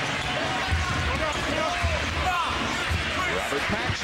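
Basketball dribbled on a hardwood court under a steady arena crowd noise, with several short squeaks from players' sneakers.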